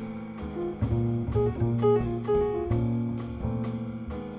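Jazz combo playing: a hollow-body electric guitar carries a line of short single notes over walking upright bass, drum-kit cymbal strokes and piano.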